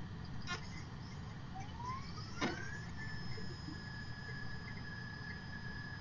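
Computer optical drive spinning up the disc a file is being opened from: a faint whine that rises in pitch over about a second and a half, then holds steady. Two clicks, a faint one about half a second in and a sharper one about two and a half seconds in.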